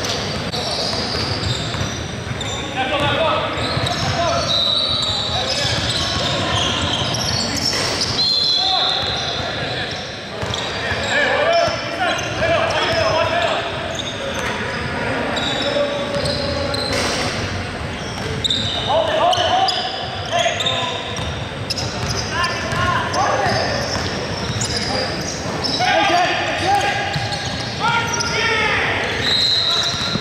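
Indoor basketball game sounds echoing in a large gym: a basketball bouncing on the hardwood floor, sneakers squeaking, and players' voices calling out.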